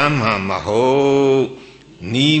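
A Buddhist monk's voice intoning a recitation in a drawn-out, sing-song chant. The phrase is held long and ends about one and a half seconds in.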